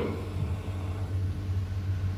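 Steady low electrical hum with faint hiss, the background noise of an old video recording's sound track.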